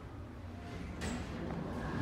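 Low, steady rumble of a ThyssenKrupp passenger elevator car in motion. About a second in, a sudden brighter, louder sound with a high ringing tone cuts in, and steady tones start near the end.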